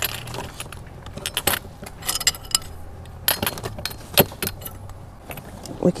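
Small glass chandelier bulbs with metal bases clinking and rattling against each other as they are handled in a plastic bag, a scattered series of sharp light clinks.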